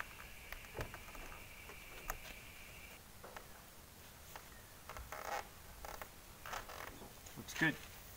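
Faint handling sounds of a car weather shield being pressed by hand onto a window frame: a few light taps and soft rustles. A faint steady high whine runs underneath and stops about three seconds in.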